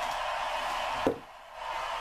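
One sharp knock about a second in, a plastic wrestling action figure handled against the toy ring, over a steady hiss.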